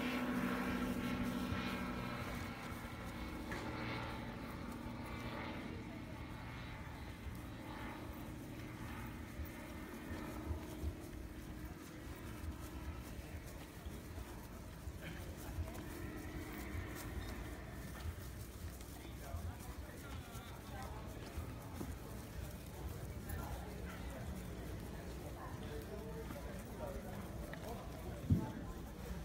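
Quiet open-air ambience: faint distant voices over a steady low rumble, with a few soft short knocks. A voice is heard more clearly in the first couple of seconds, then fades.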